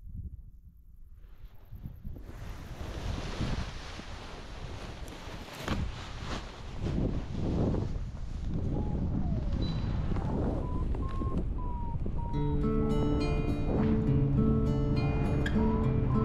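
Wind rushing over a helmet-mounted camera's microphone during a paraglider takeoff run and launch, building up over the first few seconds, with a few thumps partway through. Guitar music comes in near the end.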